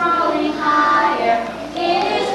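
Young children singing a song, holding sung notes that change pitch every half second or so.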